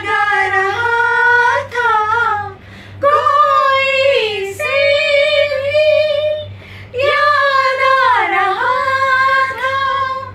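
A woman singing a Hindi song unaccompanied, in a high voice. She holds and bends long notes across several phrases, with short breaths between them.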